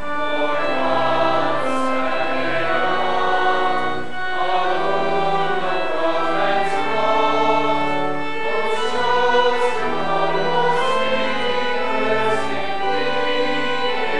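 A group of voices singing a slow hymn in sustained chords, with instrumental accompaniment.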